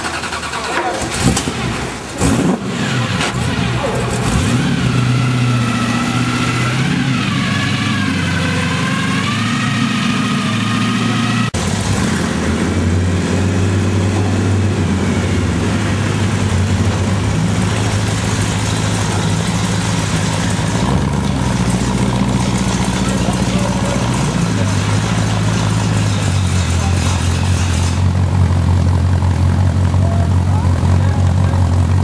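Hot rod car engines idling with a low, steady note: a few sharp clicks early on as one is started, then after a sudden cut another engine idles, its revs stepping up and down a few times. Voices are heard over the engines.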